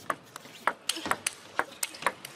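Table tennis rally: the plastic ball clicking sharply off the players' rackets and the table in quick succession, about four or five clicks a second.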